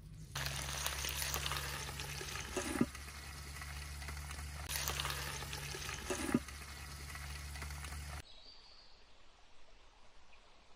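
Eggplant and tomatoes sizzling and crackling in an aluminium pan over a wood fire, with two sharp metal clanks on the pan about three and six seconds in, the second as the lid is set on. The sizzling stops abruptly about eight seconds in.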